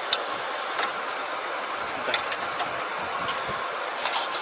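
A few sharp metal clicks and taps, the loudest just after the start, as the bent steel lifter claws on a Kubota ER470 combine's reaper are worked straight by hand. They sound over a steady background noise.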